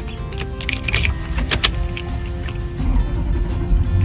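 Key sliding into and turning in a Toyota Land Cruiser's ignition lock with several sharp clicks, then the engine being cranked to start near the end, under background music.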